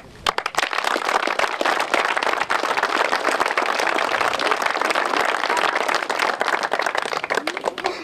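Applause from a small crowd: many hands clapping in a dense, even patter. It starts with a few sharp claps, quickly fills in, and dies away near the end.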